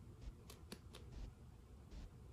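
Near silence: room tone with three faint, short clicks in quick succession about half a second to a second in.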